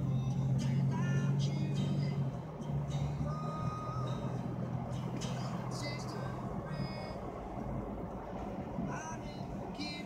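Car driving along a road, heard from inside the cabin: a steady low engine and road hum. Music with short pitched, voice-like notes plays over it, busier early on and again near the end.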